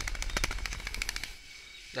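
Rapid crackle of sharp clicks over a low rumble, stopping a little over a second in: handling noise as the recording phone is moved about.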